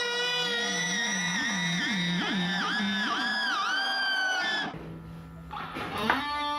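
Electric guitar playing a held lead note whose pitch dips and comes back again and again, about two or three times a second. The note stops a little before the end, and a new note slides in at the very end.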